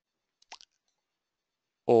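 Near silence in a pause of a man's speech, broken by one brief soft click about half a second in. His voice resumes just before the end.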